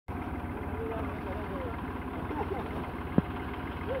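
Tractor diesel engine idling steadily, with faint voices over it and a single sharp click about three seconds in.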